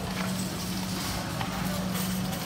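Supermarket ambience: a steady low hum, with faint footsteps and distant voices.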